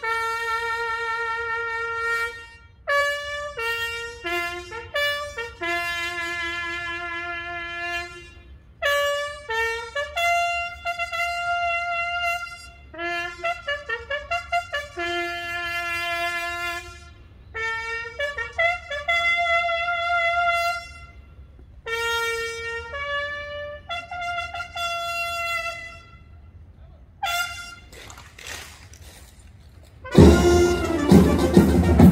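A single brass bugle playing a military call, with long held notes and runs of quick repeated notes separated by short pauses. It fades to faint notes in the last few seconds.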